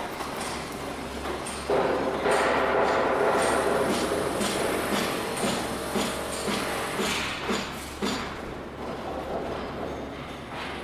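Steady mechanical machinery noise that grows suddenly louder about two seconds in, with a regular knocking about twice a second through the middle, easing off near the end.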